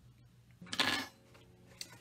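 Brief rustle of cardstock greeting cards being handled on the table, about half a second in, with a faint click near the end.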